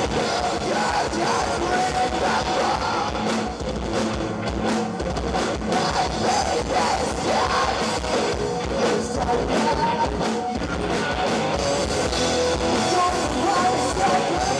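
Live rock band playing: distorted electric guitars, bass and a drum kit, with a singer shouting the vocals.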